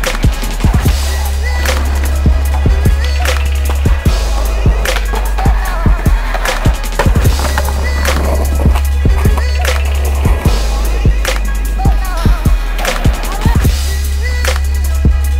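Skateboard sounds on concrete: wheels rolling, sharp pops and landings of the board at irregular moments. A music track with a heavy, steady bass plays loud beneath them.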